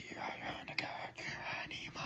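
A person whispering.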